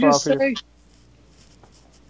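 A man's voice for about half a second, then faint room tone with a low steady hum.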